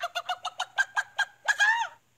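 A man's attempt at beatboxing: a quick run of mouth pops, about seven a second, ending in a short, louder call that falls in pitch. It cuts off suddenly.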